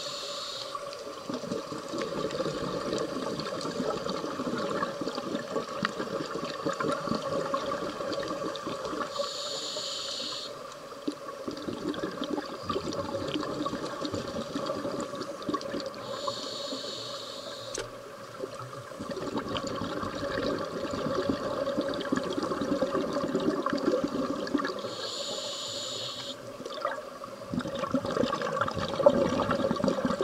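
Scuba regulator breathing underwater: three short hissing inhalations, several seconds apart, each followed by a long rush of exhaled bubbles, over a steady hum.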